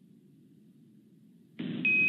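A faint low hum, then about one and a half seconds in a space-to-ground radio channel opens abruptly with a burst of hiss. A short, steady high beep sounds near the end as the loop keys up for a call from Mission Control.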